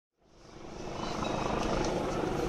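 Busy city street ambience fading in from silence: a steady wash of traffic and crowd noise.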